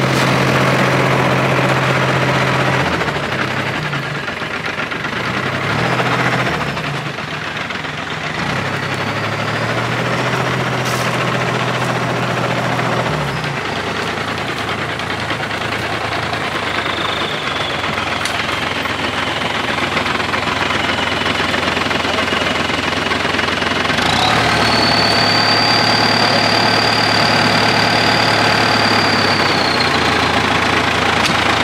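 Farm tractor's diesel engine running steadily, its pitch shifting several times in the first half. A steady high whine joins in over the last few seconds.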